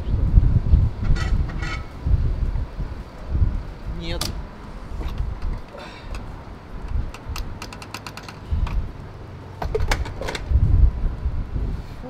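Wind buffeting the microphone in uneven low gusts, with scattered clicks and knocks from a petrol pump's fuel nozzle being handled, including a quick run of clicks partway through.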